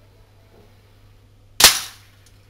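A single shot from an Aimtop SVD gas airsoft rifle, its BB striking a hanging tin can close by: one sharp crack near the end that rings out briefly. It is one clean shot with no double-fire, which is the fault the rifle has just been repaired for.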